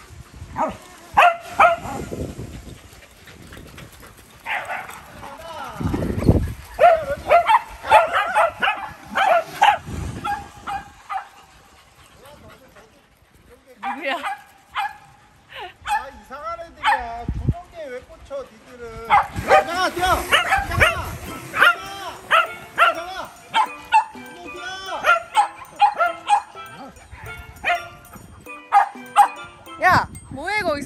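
A group of small dogs barking and yipping in rapid short bursts, with a quieter pause about eleven to fourteen seconds in.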